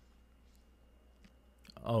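Near silence: room tone with a few faint clicks, then a man's voice starts with "Oh" near the end.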